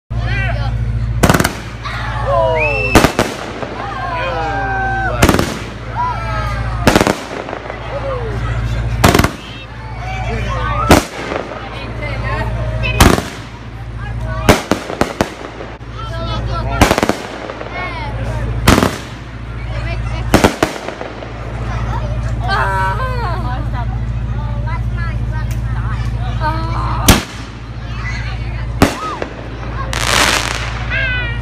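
Aerial fireworks bursting overhead, a loud bang about every two seconds with a quick cluster of bangs in the middle and a pause of several seconds near the end. Crowd voices call out between the bangs over a steady low hum.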